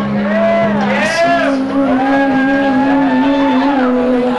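Metal band playing live, loud: a held low note steps up about a second in, under high sliding tones that rise and fall in long arches.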